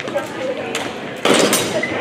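Longswords clashing in a fencing bout: one loud, sharp clash about a second and a quarter in, after a lighter knock, over background chatter in a large echoing hall.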